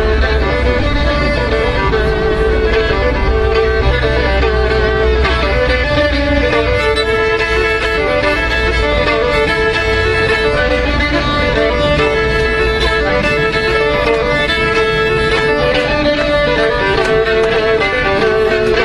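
A fiddle playing a fast folk melody of short, repeated phrases.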